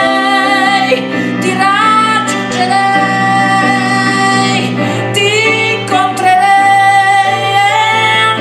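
A woman singing long held notes with vibrato, without clear words, over her own electric keyboard accompaniment in a live performance.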